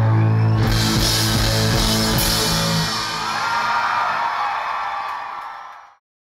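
Indie rock band playing live with electric guitars, bass and drum kit, holding a chord, then fading out in the last second.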